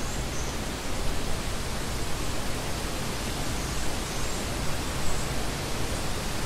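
A steady, even rushing noise with no speech or music, spread evenly from low to high pitch.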